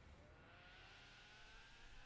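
Near silence: a faint hiss with a faint tone that rises slowly in pitch.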